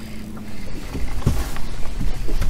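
Outdoor open-water ambience on a bass boat: wind on the microphone and water noise against the hull, with a faint steady hum at first. It grows louder about a second in.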